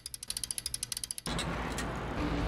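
Bicycle rear freewheel clicking as the wheel coasts: a fast, even ratchet ticking at about fourteen clicks a second. A little past halfway it cuts abruptly to a steady rushing road noise with a low hum.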